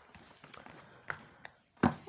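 Oracle cards being gathered and handled on a cloth-covered table: soft rustling with a few light clicks, and one louder tap near the end.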